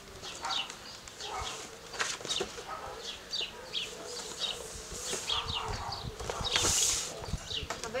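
Small birds chirping over and over in short calls, over the rustling and crinkling of a glossy plastic gift bag and paper being handled, with a louder rustle about seven seconds in.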